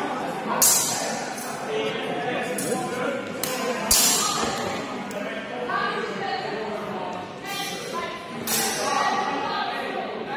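Indistinct chatter of people talking, echoing in a large sports hall, broken by several sharp clacks and knocks, the loudest about half a second in and about four seconds in.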